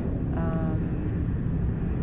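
Airplane engine noise overhead: a steady low rumble.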